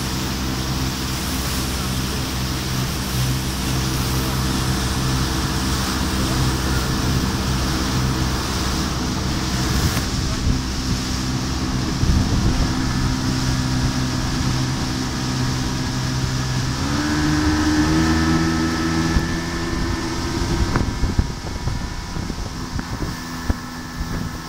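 Evinrude 115 hp outboard motor running steadily at about half throttle under way, with wind and water noise. About 17 seconds in, its pitch rises and holds higher as the revs come up.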